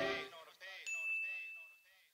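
The song fades out in a faint repeating tail. Near the middle a single bright ding, a logo sting sound effect, rings for nearly a second and fades.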